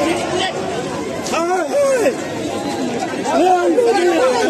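Raised voices of a crowd, several people shouting over one another, with strained high voices rising and falling in short repeated shouts.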